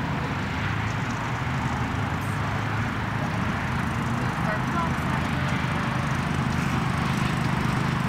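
A small engine running steadily with a low, even hum.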